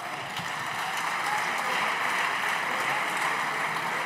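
Applause from the deputies in the chamber: many hands clapping together, building over the first second or so and then holding steady.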